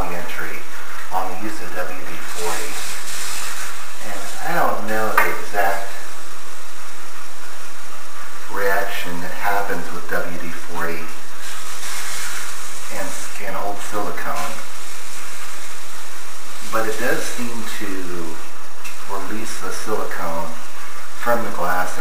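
A man talking in short phrases, with a brief hiss twice between them.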